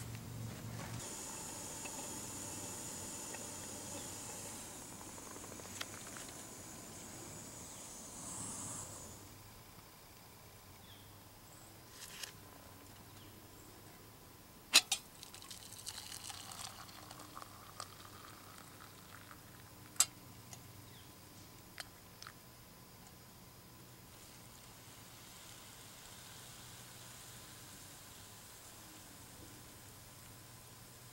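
Small kettle on a camp stove hissing steadily as the water comes to the boil, stopping about nine seconds in. Then a few sharp metallic clicks and knocks, the loudest near the middle, and hot water poured from the kettle into an enamel mug and later into a bowl of dry noodles.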